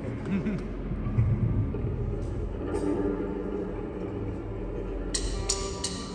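Stage sound of a live rock band between songs: a steady low amplifier hum with faint held instrument tones and some murmuring voices. Near the end comes a quick series of sharp ticks.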